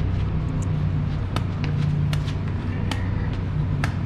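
A vehicle engine idling steadily, with a few short sharp clicks over it.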